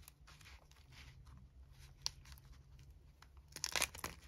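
Faint handling of craft papers and stamps on a desk: light rustling and a few small clicks, with a louder rustle near the end.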